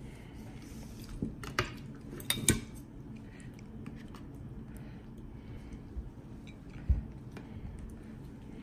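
Metal cake server clicking and scraping against a plate while a slice of chocolate-glazed cake is cut and lifted onto a serving plate, with a few sharp clinks about two seconds in and a dull knock near the end.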